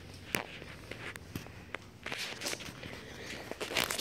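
Footsteps of someone walking, heard as a scattered run of light, irregular taps.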